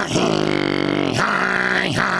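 A man's drawn-out chanted vocal cry, held on one steady pitch for about a second, followed by a second, shorter cry that bends in pitch, sung as part of a call-and-response chant.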